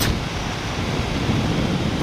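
Steady wind rushing over the microphone of a motorcycle riding at speed, with engine and road noise underneath.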